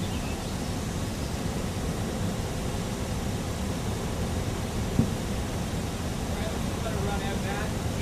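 Steady low outdoor rumble with faint distant voices, and a single sharp knock about five seconds in.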